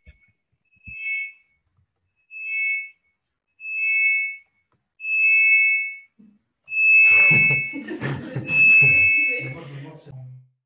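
Audio feedback: a high two-note whistle pulsing about every one and a half seconds, each pulse longer and louder, swelling in the last few seconds into a long squeal over garbled, echoing voice sound. It is the sign of the call's own sound looping back into the microphone, after the sound was judged not good.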